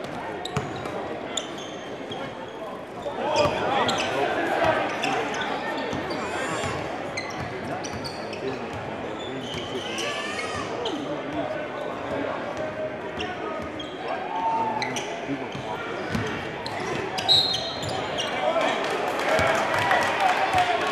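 A basketball being dribbled on a hardwood gym floor, repeated sharp bounces over a steady murmur of indistinct crowd chatter echoing in the hall.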